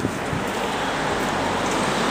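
Steady rushing wind and handling noise on a handheld camera's microphone, with a brief knock right at the start.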